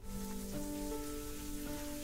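Shower water spraying steadily, with soft music of long held notes underneath.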